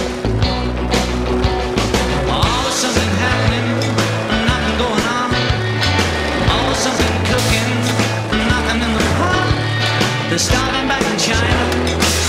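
Skateboard wheels rolling on concrete, mixed with a rock music soundtrack that has a steady bass line.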